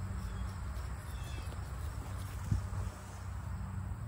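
Outdoor background: a steady low hum with faint noise above it, and one soft thump about two and a half seconds in.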